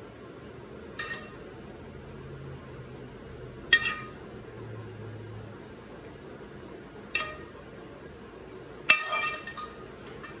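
Metal spoon clinking against a pan while spooning out sauce: four short ringing clinks a few seconds apart, the last the loudest and followed by a few smaller knocks.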